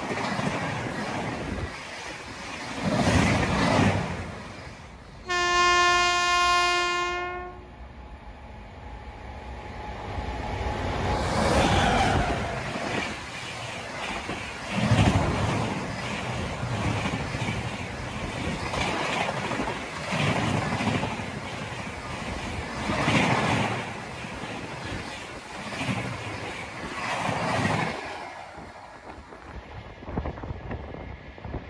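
Express train passing at speed, its coaches' wheels rumbling and clattering over the rails, swelling every few seconds as each set of wheels goes by. About five seconds in, a train horn sounds one steady blast of about two and a half seconds.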